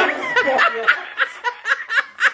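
Laughter: after about a second it settles into a regular run of short laughs, about four a second.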